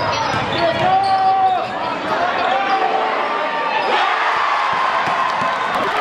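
Live basketball game sound in a gym: a basketball bouncing on the hardwood court amid many overlapping shouting crowd voices.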